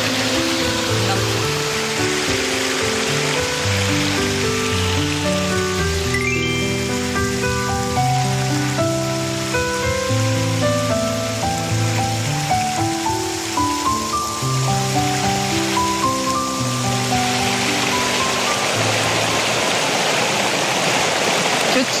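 Soft background music of slow stepped notes over the steady rush of flowing stream water. The water grows louder in the last few seconds as the music thins out.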